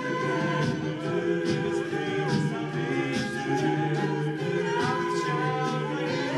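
Male a cappella group singing live in harmony, several voice parts held and moving together over a steady beat from vocal percussion.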